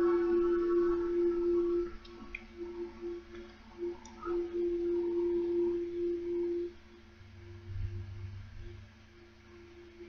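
Ambient meditation music dying away: one held drone tone that wavers and breaks up. Its higher overtones fade within the first two seconds, and the tone itself fades out after about seven seconds. A brief low rumble comes near the end.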